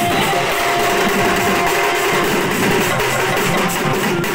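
Sambalpuri band music: many hand-carried drums and cymbals played in a fast, dense rhythm, with a melody line over them.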